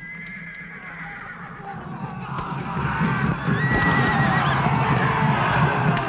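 Battle sounds fading in and building: horses whinnying over a crowd of fighting men shouting.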